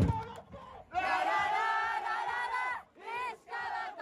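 Football supporters chanting in unison: a thump at the start, then one long held call about a second in, followed by two short shouted calls.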